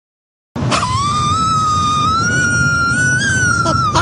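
A long, high-pitched laugh held on one drawn-out note that creeps slightly upward, starting about half a second in, over a rough, noisy low layer.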